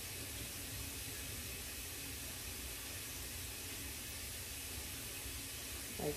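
Steady faint hiss of room tone, with no distinct sounds standing out.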